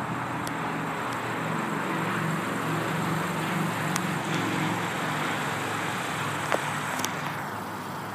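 Steady motor-vehicle hum with a low droning tone under an even outdoor noise, and a couple of sharp clicks near the end.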